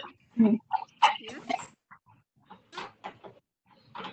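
Short, indistinct voice sounds over a video call's audio, a few quick bursts in the first two seconds and fainter ones after, none forming clear words.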